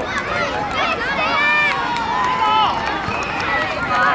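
Many small children shouting and chattering at once, with adults' voices among them. One child's high call stands out about a second and a half in.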